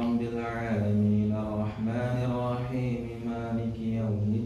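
A man's voice reciting Arabic prayer aloud in a melodic chant, the imam leading the congregational prayer, holding long drawn-out notes with short breaks between phrases.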